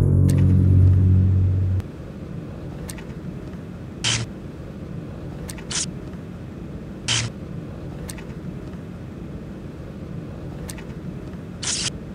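Trailer sound design: a loud deep hum cuts off about two seconds in, leaving a steady low rumble. Four short bursts of hiss and a few faint clicks come over the rumble.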